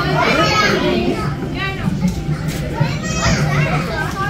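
Children's voices: several kids talking and calling out in high, rising and falling voices over general visitor chatter.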